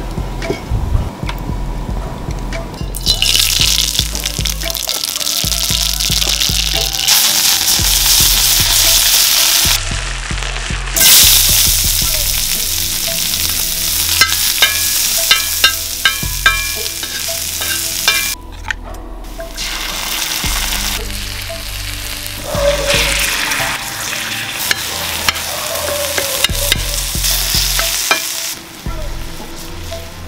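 Oil, chopped onions and then mutton mince sizzling as they fry on a flat iron tawa over a wood fire, with scraping and small ticks as the mix is stirred. The loud sizzle comes in about three seconds in and breaks off briefly past the middle.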